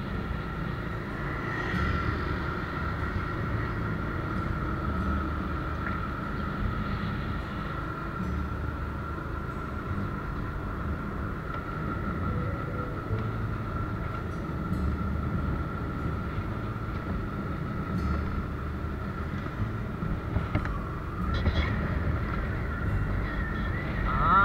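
Motor scooter running at a steady cruise, with a steady high whine and uneven low wind buffeting on the microphone.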